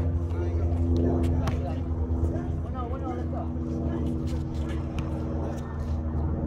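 Distant voices of players calling out over a steady low hum, with a few sharp taps scattered through.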